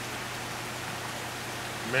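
Steady rush of water noise, with a low steady hum beneath it.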